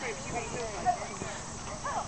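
Indistinct voices of people talking at a low level, with a soft knock about a second in.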